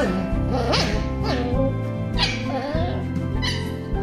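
Two seven-week-old puppies yipping and whining in play as they wrestle over a ball, about five short calls that swoop up and down in pitch, over steady background music.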